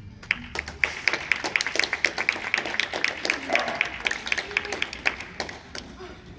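Audience applause of hand claps, each clap standing out, starting as the routine's music stops and thinning near the end.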